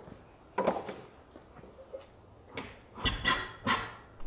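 A few knocks and bumps, mostly near the end, as a tall structural insulated panel (SIP) is stood upright and pushed into place against the garage wall framing.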